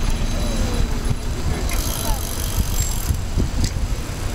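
Wind buffeting the microphone of a camera carried by a moving cyclist riding in a large group, with faint voices of the surrounding riders. A brighter hiss joins for about a second from near the middle.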